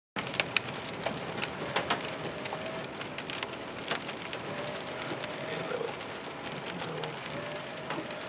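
Rain on a car's windshield and roof, heard from inside the cabin: scattered sharp drop taps over a steady hiss.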